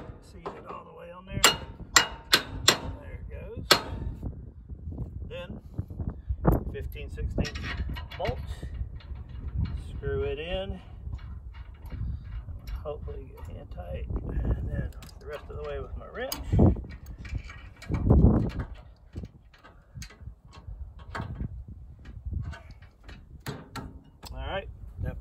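Hammer blows on the steel receiver slide of a cattle squeeze chute's wheel kit, driving it into the hitch slot: a quick run of sharp strikes in the first four seconds, then scattered lighter knocks and metal scraping as the part is worked into place.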